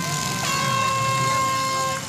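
A horn blowing one long, steady blast, the signal that ends the demolition derby heat. A second, lower tone joins about half a second in, and the whole blast cuts off suddenly at the end.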